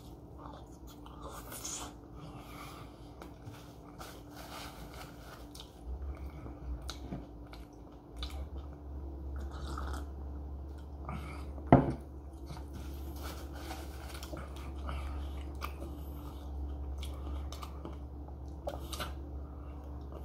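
Close-up chewing and biting of a Subway turkey wrap, with many small mouth clicks. A single sharp knock comes about twelve seconds in, and a steady low hum sets in partway through.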